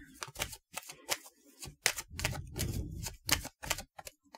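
A deck of Angel Answers oracle cards being shuffled by hand: cards slap against each other in a run of sharp clicks, about three to four a second, with low rubbing and handling sounds between them.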